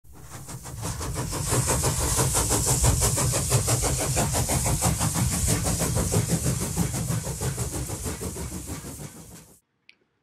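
An engine running with a fast, even beat, fading in over the first couple of seconds and fading out near the end.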